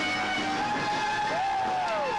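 Electric guitar holding one long sustained lead note, while a second note is bent up and then slides down near the end.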